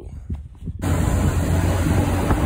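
Road and wind noise from a moving vehicle, filmed through or beside its window. It cuts in suddenly a little under a second in and then runs as a steady, loud, low rush.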